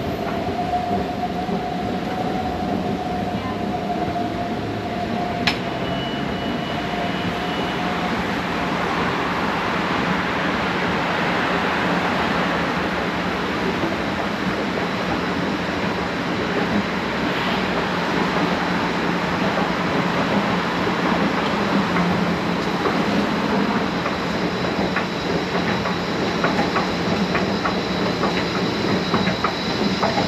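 A Metro train's steady rumble swelling and easing off in the middle, over the hum of a running escalator, with a thin whine fading away in the first several seconds. A run of light clicks near the end.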